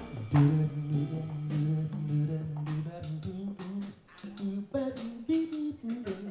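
Live band music: a man singing a wordless melody into a microphone over upright double bass, electric guitar and drum kit, with drum and cymbal strikes throughout.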